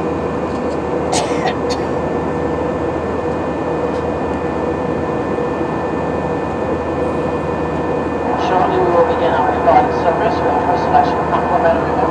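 Steady cabin noise of an Airbus A319 airliner in flight: an even rush of engine and airflow noise with a constant hum. A voice over the cabin public-address system comes in about two-thirds of the way through.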